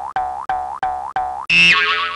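Cartoon boing sound effects for an animated logo: a quick run of springy boings, about three a second, each rising in pitch. About one and a half seconds in comes a louder sound that slides down in pitch and rings out.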